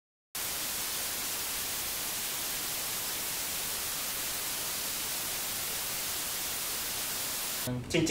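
Steady static hiss like white noise, starting suddenly and holding at an even level, then cutting off abruptly as a man begins to speak.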